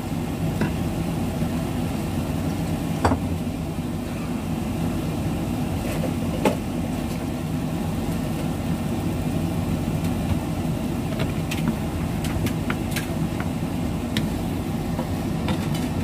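Broccoli being stir-fried in a nonstick wok with a wooden spatula, the spatula now and then clicking against the pan, over a steady low hum.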